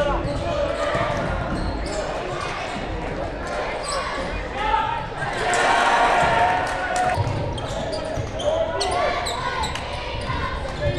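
A basketball being dribbled on a hardwood court during a game in a gymnasium, with short sharp bounces and knocks over the indistinct voices of players and the crowd.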